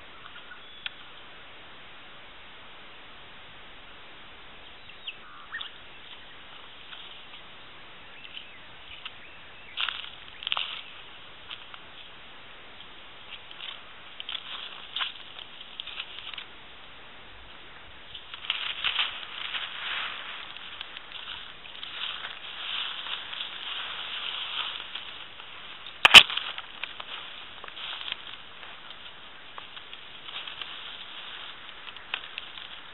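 Birds calling on and off in coastal vine-thicket scrub over a faint steady hiss, busier about two-thirds of the way through. One sharp click near the end.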